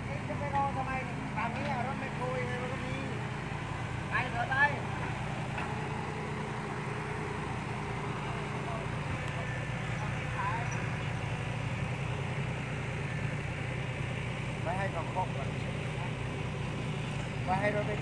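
Diesel engine of a dump truck running steadily under load as it climbs a dirt slope in second gear, a low even drone with no revving. Brief voices call out a few times over it.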